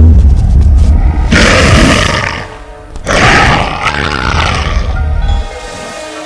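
Horror film soundtrack: a loud, deep rumbling drone with two long roars over it, each about a second. Near the end it drops to quieter sustained musical tones.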